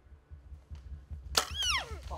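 A single sharp crack of a bow shot and the arrow striking a bull elk at close range, about a second and a half in. It is followed at once by a short, high cry that falls steeply in pitch.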